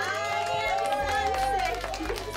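A group of young children's and adults' voices singing a sun-safety song, ending the line 'Yes, I am' and holding sung notes.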